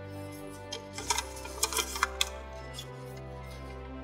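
Background music with several short, crisp crackles of origami paper being folded over by hand, bunched between about one and two seconds in.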